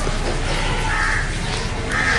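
Two short, harsh animal calls, one about halfway through and one at the end, over a steady background din.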